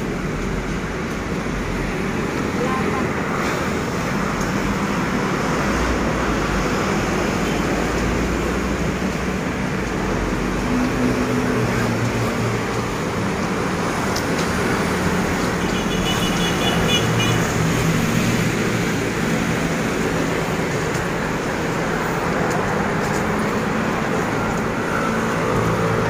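Steady road traffic noise from cars and motorcycles on a busy multi-lane city road.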